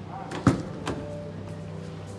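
Rear passenger door of a 2021 Toyota Vios GR Sport being opened by its outside handle: a sharp latch click about half a second in, then a softer click a moment later as the door swings open.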